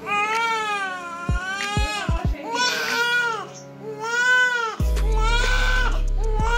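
A newborn baby crying in four long wails, each rising and falling in pitch, with short breaths between them.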